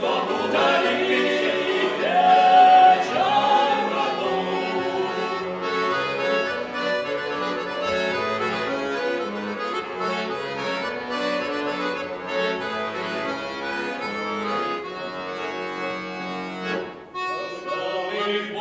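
Bayan (Russian button accordion) playing a solo instrumental interlude between sung verses. It breaks off briefly near the end.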